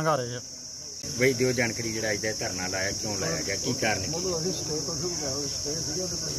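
A steady, high-pitched insect drone, like crickets, runs without a break. Under it, people talk in the background for a few seconds.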